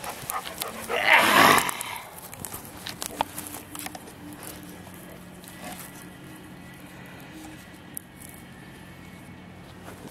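A dog gives one loud, rough vocal sound about a second in, followed by faint scattered clicks and a low steady hum.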